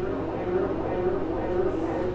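Indistinct, muffled voices over a steady low electrical hum.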